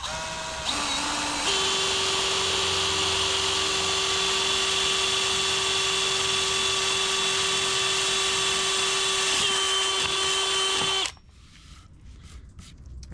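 Handheld power drill with a 5/16-inch twist bit boring through 3/4-inch MDF. The motor steps up to full speed in the first second or so, runs steadily under load for about nine seconds, then stops about a second before the end. The cut is slow because the bit is dull.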